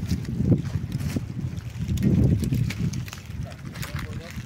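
Wind buffeting the microphone: a gusty low rumble that swells about half a second in and again, most strongly, around two seconds in, with a few faint clicks.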